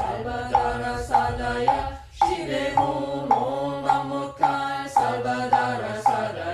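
Korean Buddhist mantra chanting: a voice intoning the syllables on held notes, kept in time by a steady beat of wooden strikes about twice a second.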